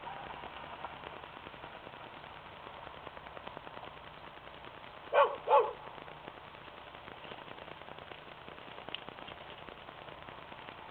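A dog barking twice, two short barks close together about five seconds in, over faint outdoor background noise.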